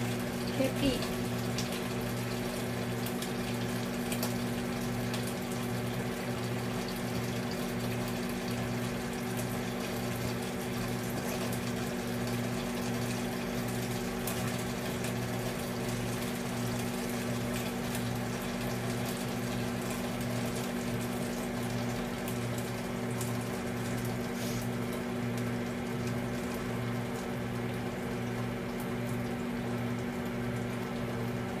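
Steady machine hum with a low tone that pulses on and off about once a second.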